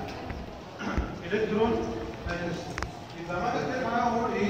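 A man lecturing in a room, his speech broken by a dull thump about a second in and a sharp click later on.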